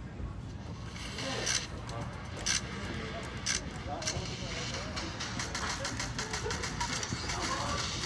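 Indoor soccer game ambience: distant players' voices and shouts over a steady background, with scattered short sharp sounds, single ones at first and more of them in quick succession later.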